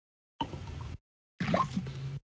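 A beer being cracked open: a sharp pop about half a second in, followed by a short hiss.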